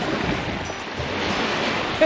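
Small waves washing onto a sandy shore, a steady rush of surf, with wind blowing on the microphone.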